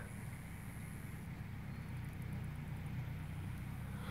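A faint, steady low hum of running machinery or an engine, unchanging throughout, with nothing else standing out.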